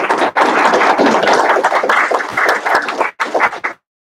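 Audience applauding, a dense patter of many hands clapping that stops suddenly near the end.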